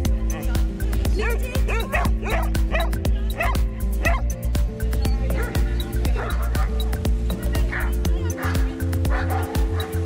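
Background music with a steady beat and heavy bass, with dogs yipping and barking at play over it in the first few seconds and fainter calls later.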